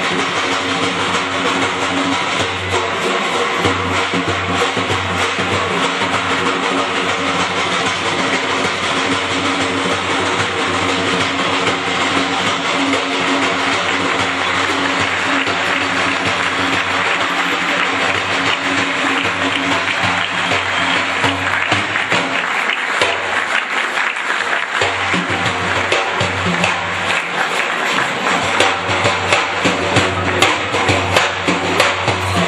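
Daf, a large Persian frame drum with metal ringlets, played in a fast, continuous solo: dense rolls of strokes with the ringlets jingling throughout over a steady low pitched ring. The strokes grow sharper and more accented in the last few seconds.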